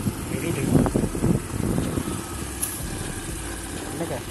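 Motor scooter running at low speed, a steady low rumble with wind on the microphone. Faint voices are heard briefly about a second in.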